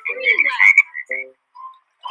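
Frog croaking sound effects in a children's song recording: a quick run of croaks lasting about a second, then a single short faint note.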